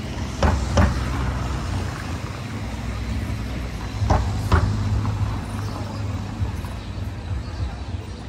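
Steady low traffic rumble of a street, with two pairs of sharp knocks, the first pair about half a second in and the second about four seconds in.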